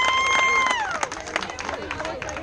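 A high voice holds one long cheering shout that rises, stays level for most of a second and then falls away, over scattered clapping and excited crowd voices.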